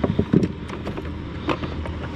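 Handling noises in a fishing kayak: a few sharp knocks and clicks, a cluster right at the start and one more about a second and a half in, over a faint steady low background.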